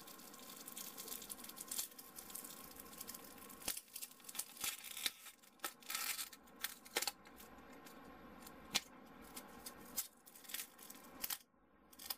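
Thin XPS polystyrene foam strips being pulled apart at a joint glued with UHU Por, giving irregular faint crackles and tearing sounds as the still-tacky glue and the foam surface let go.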